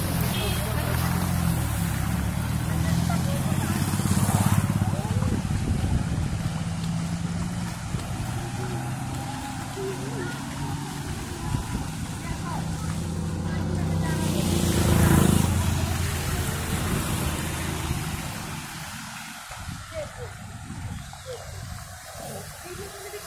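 Road traffic driving through floodwater, tyres hissing and splashing. One vehicle passes close about fifteen seconds in, swelling and fading.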